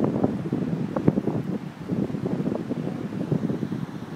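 Wind buffeting the microphone: a rough, uneven rumble that rises and falls in gusts.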